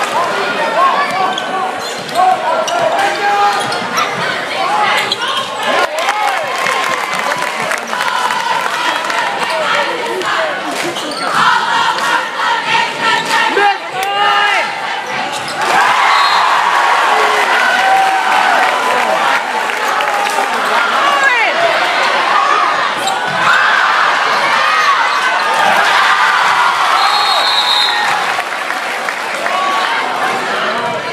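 Live basketball game sound in a gym: the ball bouncing on the hardwood, sneakers squeaking, and a crowd shouting and cheering throughout. The crowd gets louder about halfway through.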